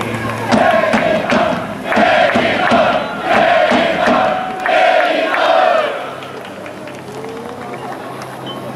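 Yokohama F. Marinos supporters chanting in unison from the stands, four loud sung phrases over a steady beat, dying down after about six seconds into general crowd noise.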